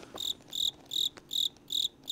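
Cricket chirping: short, high chirps repeating evenly about two and a half times a second.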